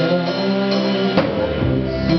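Live band playing: held, changing notes over guitar and drum kit, with one sharp drum hit a little past the middle.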